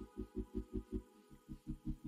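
Faint background music: a soft low pulse about five times a second under held synth tones.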